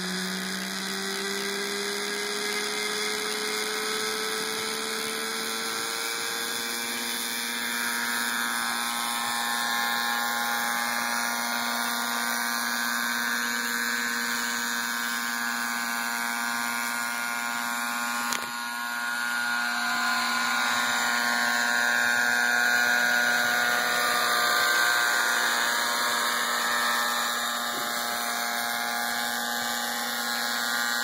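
Nitro-powered RC helicopter with an MD 530 scale body: the glow engine and rotor run with a high, steady whine. The pitch climbs over the first few seconds as the helicopter spools up from the ground, then holds steady in flight.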